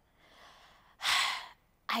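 A woman's audible breath: a faint intake, then one loud breathy exhale, like a sigh, about a second in, lasting about half a second.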